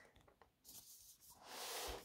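Faint rubbing and brushing of a hand against a cardboard box. It starts with a few light ticks and swells into a soft scraping hiss over the second second.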